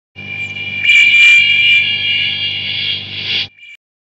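A sustained electronic synth tone: several steady high pitches over a low hum, swelling about a second in and cutting off suddenly near the end, with a brief faint echo after.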